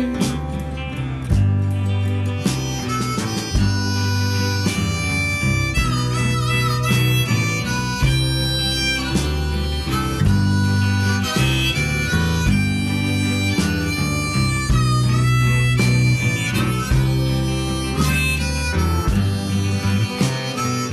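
Harmonica solo in an instrumental break of a blues-tinged song, its held notes wavering and bending over the band's guitar and bass.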